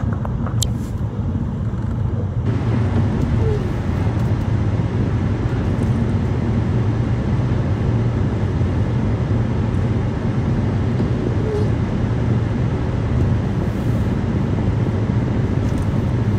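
Steady low rumble of a car driving at speed, with engine and tyre noise heard from inside the cabin.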